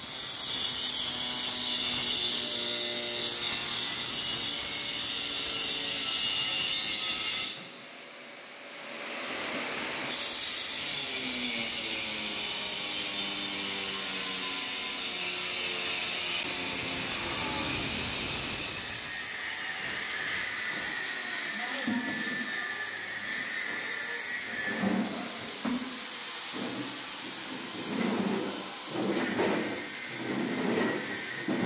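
Electric angle grinders running and cutting, first through a stone countertop and later through steel rebar: a steady motor whine whose pitch sags and recovers as the disc takes load. There is a brief lull about eight seconds in, and from about twenty-five seconds a higher, thinner whine with scattered knocks.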